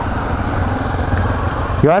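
Yamaha XTZ 250 Ténéré's single-cylinder engine running steadily at low road speed, heard from on board the bike as a steady low rumble.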